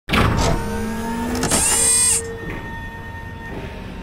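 A small motor revving, with a rising whine over the first second and a half and a short, very high-pitched burst, then settling to a quieter steady hum with held tones.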